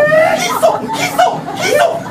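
A performer's exaggerated stage laughter, a quick run of rising-and-falling voiced syllables.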